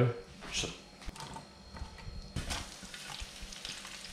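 Sliced garlic tipped from a wooden chopping board into hot olive oil in a frying pan, sizzling, with a few light knocks of the board and pan.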